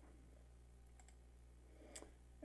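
Near silence with a steady faint low hum, broken by faint computer mouse clicks about a second in and again near the end.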